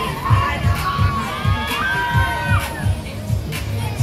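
Riders on a swinging pendulum fairground ride screaming, long drawn-out screams that rise and hold, over the ride's loud dance music with a steady beat of about two thumps a second.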